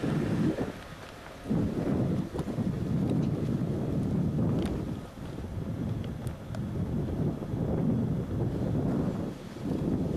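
Wind buffeting the microphone: a low rumble that rises and falls in gusts, dipping briefly about a second in and again around the middle.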